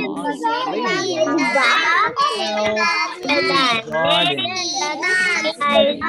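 Several young children reading a sentence aloud together in a sing-song chorus, their voices overlapping and out of step.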